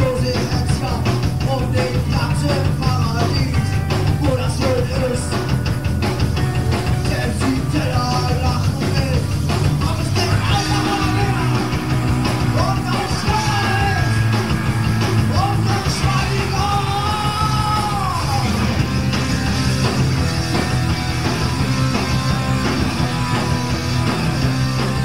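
Punk rock band playing live: electric guitar, bass and drum kit with a sung and shouted lead vocal, the vocal standing out most clearly from about ten seconds in.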